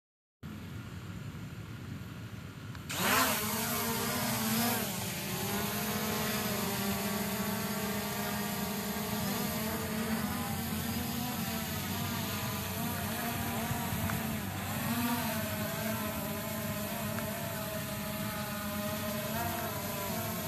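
Quadcopter drone's propellers whirring, rising sharply in level about three seconds in as it lifts off, then a steady buzzing whine whose pitch wavers up and down as the motors adjust in flight.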